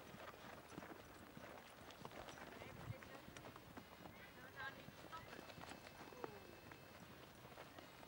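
Faint clip-clop of ridden ponies' hooves walking on a dirt track, with faint voices in the background.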